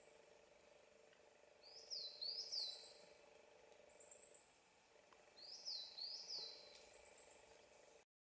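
Small woodland birds calling faintly: short runs of about four quick, very high notes and pairs of sweeping whistled notes, repeated several times, over a faint steady hum.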